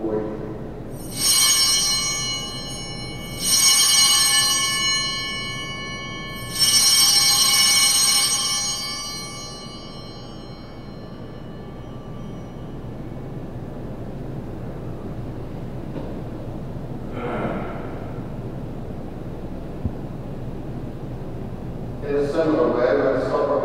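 Altar bells rung three times at the elevation of the consecrated host, each ring a bright cluster of high tones fading over a couple of seconds.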